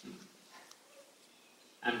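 A pause in a man's lecture: a brief faint vocal sound at the start, then quiet room tone, and his voice resumes near the end.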